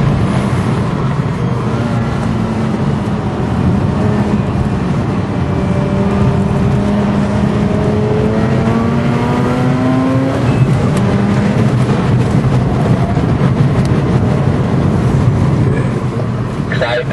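Mazda RX-8's twin-rotor rotary engine at speed, heard from inside the cabin: its note climbs steadily as it pulls through a gear, then drops away suddenly about ten seconds in, over steady wind and road noise.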